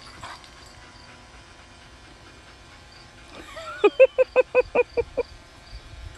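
A voice gives a rapid run of about eight short, pitched yelp-like notes, about six a second, beginning about four seconds in after a short rising note. These notes are the loudest sound.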